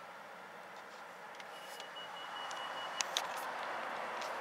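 Street traffic noise that swells from about halfway through, with one steady high-pitched tone held for about a second and a half in the middle and a few sharp clicks, the loudest two close together about three seconds in.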